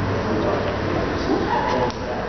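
Indistinct background voices of people talking in a large showroom, with a short higher-pitched sound near the end.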